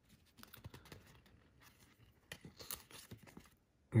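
Faint dry clicks and rustles of cardboard trading cards being thumbed through in the hands and set down, in two short clusters: one about half a second in, another after two seconds.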